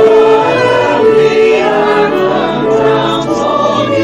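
A mixed choir singing a hymn together, held notes over a violin accompaniment.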